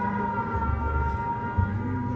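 Air-raid siren sound effect played over theatre speakers: several held tones sinking slightly in pitch, with low thumps underneath.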